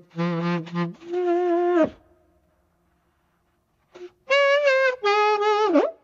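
AI-resynthesized saxophone from Google Magenta's DDSP timbre-transfer model, playing back a short sung vocal improvisation with a wavering pitch, so it sounds like a saxophone. Two phrases, the second ending in a falling slide, then a pause of about two seconds, then two more phrases, the last with a swooping bend down and back up.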